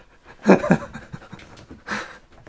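A man laughing breathily: two short huffs about half a second in and a third near the end.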